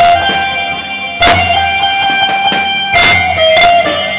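Live Turkish zeybek folk music: a slow melody of long held notes stepping in pitch, over a few heavy, unevenly spaced davul bass-drum strokes.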